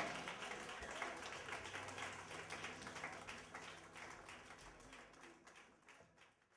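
Faint audience applause, many hands clapping, fading out steadily until it is gone at the very end.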